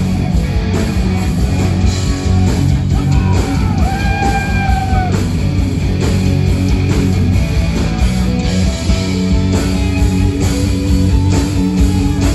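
Live rock band playing an instrumental passage: electric guitars over bass guitar and drums. About three to five seconds in, a guitar bends a note up and holds it.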